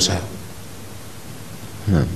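A pause in a man's speech filled by a steady background hiss, with his voice cutting back in near the end.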